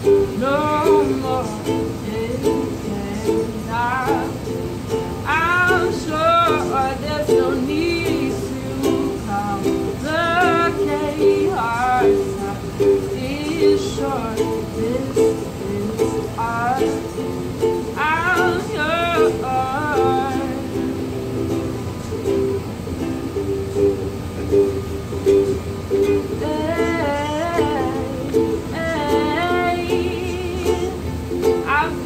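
Ukulele strummed steadily, with a voice singing in short phrases over it at intervals.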